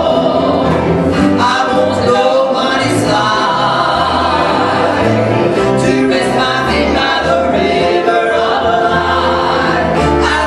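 Live gospel trio singing together into microphones, accompanied by piano and guitar over a steady bass line.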